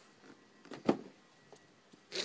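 Handling noise: a sharp short knock about a second in, with a softer sound just before it and a faint tick later, against quiet room tone.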